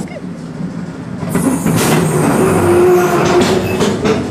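Gerstlauer bobsled roller coaster train rolling along the track into the station, quieter at first, then a loud rushing rattle from just over a second in, with a brief squealing tone near the middle.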